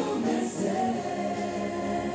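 Live Christian worship song: a woman and a man singing together with electric keyboard accompaniment, in sustained held notes.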